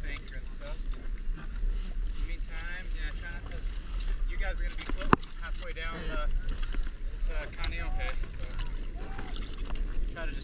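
Wind buffeting the microphone with a steady low rumble, under faint voices talking in snatches, with one sharp click about five seconds in.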